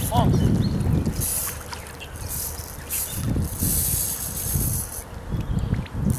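Water splashing and sloshing around a wading angler's legs as he plays a hooked trout, with a man's low murmurs and grunts now and then.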